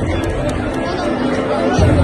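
Stadium crowd chatter, many voices talking over one another, with music underneath that has held notes and a heavy bass, which comes back in near the end.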